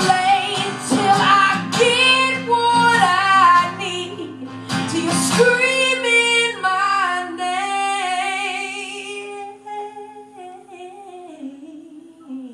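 A woman singing live with guitar accompaniment. The guitar drops out about five and a half seconds in, leaving one long held sung note that fades and slides down near the end.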